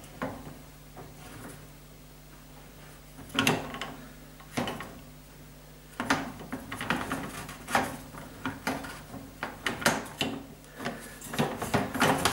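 Plastic dishwasher spray arm being turned and worked on its hub by hand: scattered clicks and knocks, a couple near the middle, then a busier run of them in the second half.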